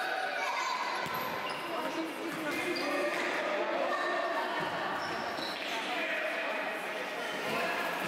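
A futsal ball being kicked and bouncing on a hard indoor court, a few dull thuds, under shouting voices, all echoing in a large sports hall.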